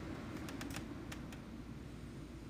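Faint, irregular light tapping clicks, about half a dozen, over a low steady room hum.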